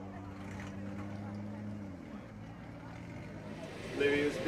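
Engine of a junior sedan speedway car running at a steady note, which falls away and changes about two seconds in.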